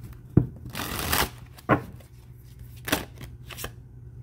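A tarot deck being shuffled by hand. The cards rustle against each other, with a longer riffle about a second in and a few sharp snaps spaced about a second apart.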